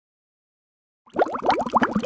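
Silence for about a second, then a rapid run of bubbling, plopping water, many quick rising blips close together.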